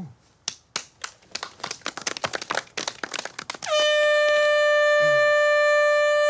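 A run of irregular sharp clicks, then a handheld canned air horn blown in one long, loud, steady-pitched blast of about two and a half seconds, starting a little past halfway.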